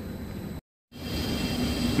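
Steady mechanical hum, broken by a short silent gap about half a second in. Then comes the steady running noise of an HVAC unit driven by an ABB variable frequency drive, back online after a restart and growing slightly louder.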